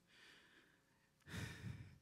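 Near silence, then a man's audible breath into a handheld microphone, about one and a half seconds in and lasting about half a second.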